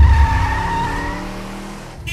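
Car tyres screeching, a held squeal over a low rumble at the start, fading away over about two seconds.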